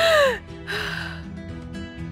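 A woman sobbing: a short falling cry, then a gasping breath in, over soft background music.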